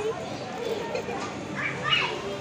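People's voices and background chatter, with a short, high-pitched vocal exclamation near the end.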